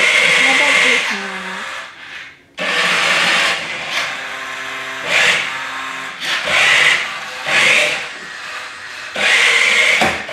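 Battery-powered Maisto Tech McLaren P1 RC toy car's small electric drive motor whirring as it drives over a hardwood floor. It surges and eases again and again as the throttle is worked, with a short break about two seconds in.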